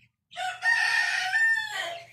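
A single loud, harsh animal call lasting about a second and a half, starting shortly after the start.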